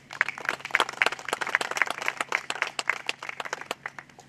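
A small seated audience clapping in welcome, a dense patter of separate hand claps that starts just after the invitation and dies away shortly before the end.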